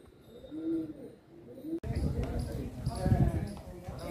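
Pigeons cooing, a low rising-and-falling coo about once a second. Just under two seconds in, the sound cuts abruptly to louder, indistinct chatter of people's voices.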